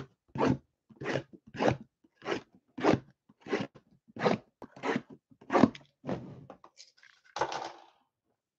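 Shrink-wrapped cardboard trading-card blaster boxes being handled, making a regular run of about eleven short crinkly crunches, roughly one every half second or so, with a longer rustle near the end.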